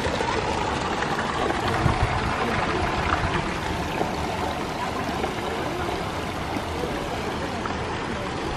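Steady rush of running water in an ornamental stone pond.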